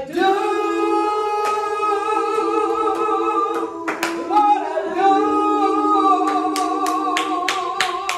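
A woman singing a worship song unaccompanied, holding two long sustained notes. About halfway through, hand claps join in, a few per second.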